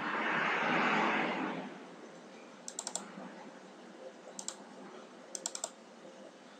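A brief rush of noise for the first second and a half, fading away. Then computer mouse clicks in three quick clusters, double-clicks opening folders one after another.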